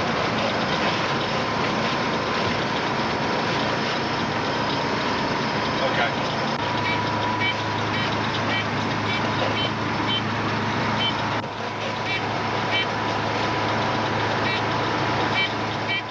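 Steady engine and road noise heard inside the cab of a Kenworth K100C cab-over semi truck cruising at highway speed, with a thin steady hum. A deeper drone sets in about halfway through, along with light ticking.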